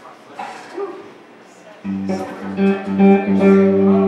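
Electric guitar through an amplifier sounding a sustained low chord or note that comes in suddenly about two seconds in and rings on to the end, over background crowd chatter.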